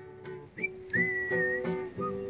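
Acoustic guitar being plucked, with a person whistling a melody over it from about a second in.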